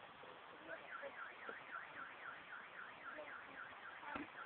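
Faint electronic warbling alarm tone, sweeping down and up about three times a second. It starts a little under a second in.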